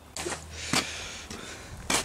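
A few knocks and clatters as the cut-down sheet-metal trunk lid is handled, the loudest a sharp knock near the end.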